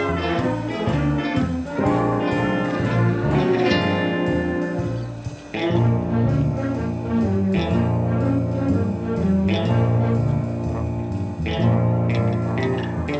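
Live school band playing: saxophones and trumpet over electric guitar, keyboard and drum kit. The band drops out briefly about five seconds in, then comes back in.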